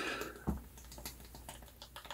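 Faint light clicks and taps of a plastic pump bottle being handled, with a soft rustle near the start and a small click about half a second in.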